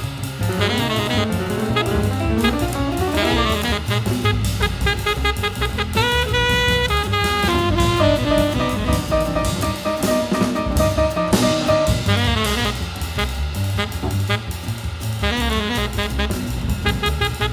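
Small-group jazz recording: a saxophone plays quick runs and holds a long note through the middle, over drum kit and bass.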